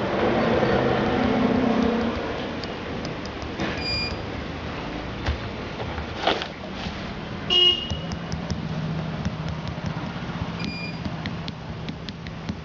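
Steady background street-traffic noise with short vehicle-horn toots: two brief high toots, about 4 s in and near the end, and another short horn about halfway through. A rustle at the start as the microphone is handled, and a brief knock about 6 s in.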